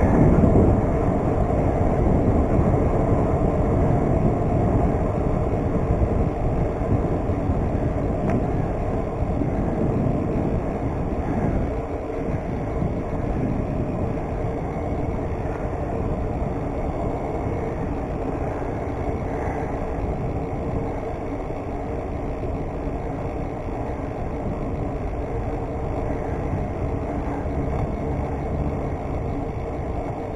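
Steady wind rush and tyre rumble from a BMX bike rolling along a paved street, picked up by a handlebar-mounted camera. The noise eases a little over the first ten seconds or so, then holds steady.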